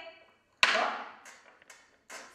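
A single sharp smack about half a second in, with a short ring-out, followed by a few faint light taps.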